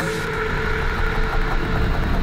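Slowed, reverb-soaked electronic track in a breakdown: the beat drops out, leaving a steady low rumbling bass drone with faint held tones.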